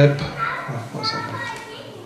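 Speech only: the tail of a man's sentence at the microphone, then quieter, indistinct talk that fades away.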